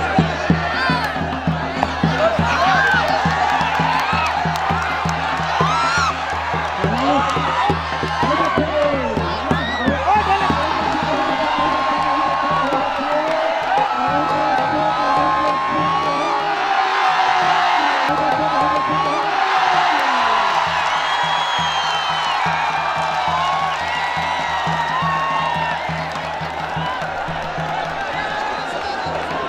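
A large crowd shouting, whooping and cheering, many voices overlapping with long rising and falling calls. Music with a steady low beat runs underneath.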